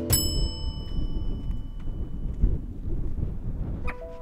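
A single bright chime rings out right at the start and fades away over about two seconds, over a low rumble of wind on the microphone that runs on. A new musical note comes in near the end.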